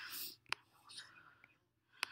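A quiet breathy whisper or breath at the very start, then a single sharp computer mouse click about half a second in.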